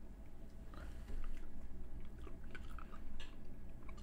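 Faint, soft chewing of a decades-old peanut that has gone moist and rubbery, so it makes no crunch.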